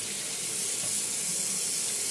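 Kitchen tap running, a steady hiss of water flowing.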